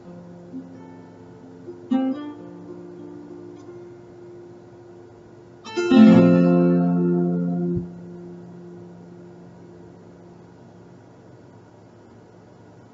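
Acoustic guitar ending a song: a few ringing notes and a plucked chord about two seconds in, then a loud final strummed chord about six seconds in that rings for nearly two seconds and is cut off suddenly.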